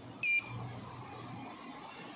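Hitachi lift hall call button pressed, giving one short high beep as the call registers, over a low background hum.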